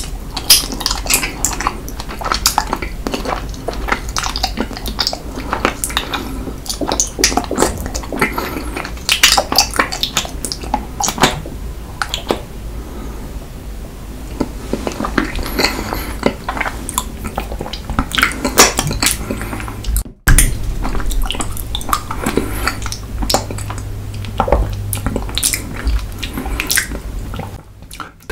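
Close-miked, ASMR-style wet squelching and sucking of soft honey jelly being squeezed from a plastic bear-shaped bottle into the mouth and eaten, full of many sharp, irregular wet clicks.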